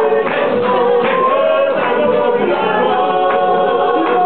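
A group of voices singing a song together, the music for a Māori poi dance.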